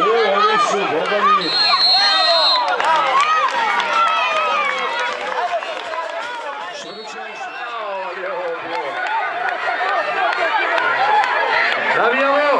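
A crowd of young children shouting and cheering over one another during a tug-of-war, with a steady high tone lasting about a second near the start. The din eases briefly in the middle, then builds again.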